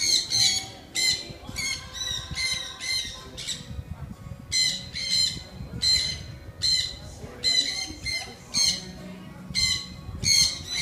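Blue-and-gold macaws squawking over and over, about two loud calls a second, with a short break a little before the middle.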